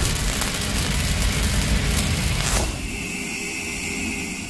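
Sound effects for a logo sting: a low engine-like rumble and hiss fading away, with a short whoosh about two and a half seconds in.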